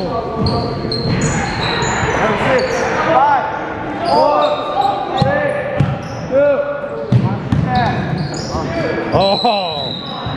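Basketball being played on a hardwood gym floor: sneakers squeaking in many short squeals, the ball bouncing, and players calling out, all echoing in a large hall.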